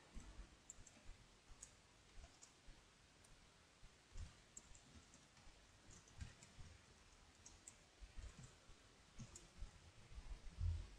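Faint, irregular clicks of a computer keyboard being typed on.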